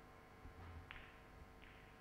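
Near silence: the hushed room tone of a snooker arena, with two faint short clicks about a second and a second and a half in.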